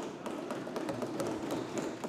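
Background noise of a large debating chamber, a steady hubbub with scattered light taps and knocks as a member sits down at his desk, and a sharp click at the very start.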